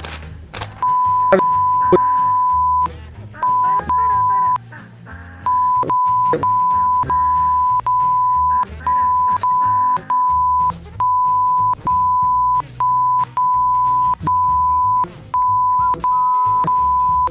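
Censor bleep: a steady high-pitched beep repeated over and over in quick succession, starting about a second in, with short gaps between the beeps, covering a spoken string of insults. Background music plays underneath.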